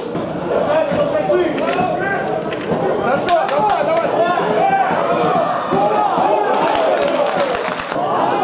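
Several voices shouting and talking over one another at a football match, with a few sharp knocks in the middle and near the end.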